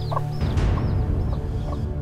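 Chickens clucking and a small bird chirping over a steady low music bed, with a sudden rushing swell of noise about half a second in.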